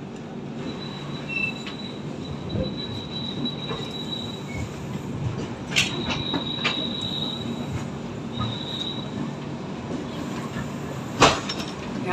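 Express passenger train running slowly into a station, its wheels rumbling on the track. A thin high squeal comes and goes, and sharp clacks sound over rail joints or points, the loudest near the end.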